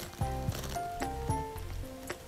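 Background music: a light, gentle instrumental melody whose notes change every half second or so.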